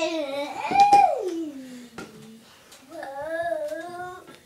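A young child's wordless vocalizing: a long call that rises and then slides down in pitch, followed by wavering babbling.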